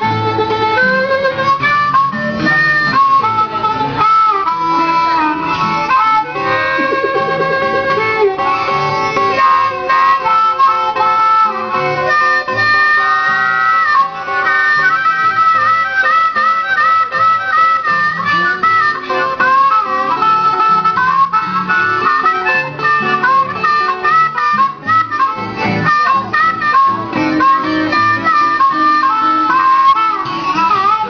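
Blues harmonica playing a continuous melody with bending, wavering notes over guitar accompaniment.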